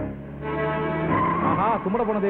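A car's tyres squealing in a long, steady screech as it swings round a corner. A voice comes in near the end.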